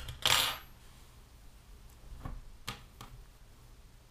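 Handling sounds on a wooden tabletop: a short rustle about a quarter of a second in, then a couple of faint light knocks as the crocheted work and small tools are moved about.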